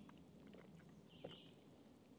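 Near silence, with one faint short slurp a little past halfway as water is sipped from the drinking valve of a soft water bag.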